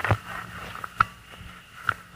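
Handling noise as the microphone is passed to the next speaker: a sharp click about a second in and a few small ticks, over the steady faint hum of an old home tape recording.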